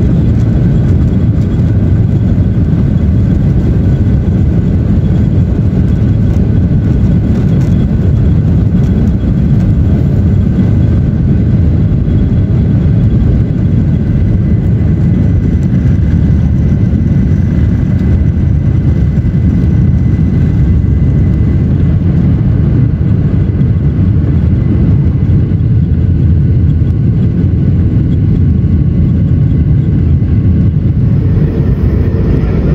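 Cabin noise of a Boeing 737-800 at takeoff and climb-out, heard at a window seat over the wing: a loud, steady, deep rumble of its CFM56-7B engines at takeoff thrust with rushing airflow, and a faint high whine.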